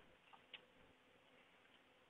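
Near silence, with two faint short clicks about half a second in.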